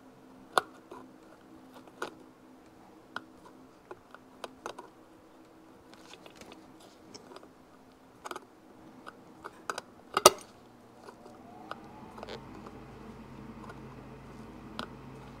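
Tape-wrapped pliers crimping a tachometer's chrome bezel rim back down a little at a time: scattered small metal clicks and ticks, with one louder click about ten seconds in.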